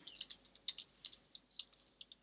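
Computer keyboard typing: a quick, uneven run of faint key clicks as a short phrase is typed.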